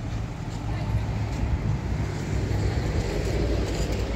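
Road traffic on a town street: a steady low rumble of cars that grows a little louder about a second in.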